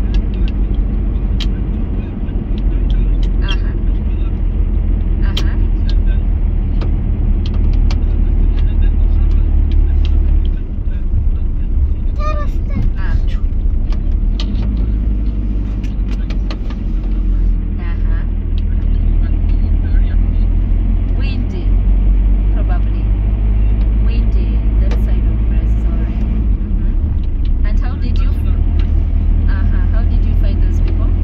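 City bus driving, heard from inside the cabin: a steady low rumble of engine and road that eases briefly a couple of times, with faint voices now and then.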